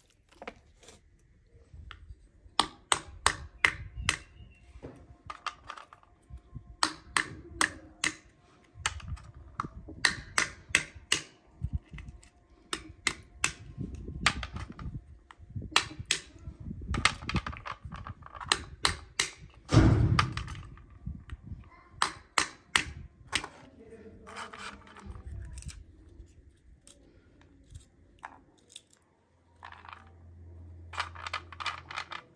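Walnuts being cracked by striking them with a hand-held stone against a stone block: clusters of sharp cracks and taps as the shells break, with one heavier thump about 20 seconds in.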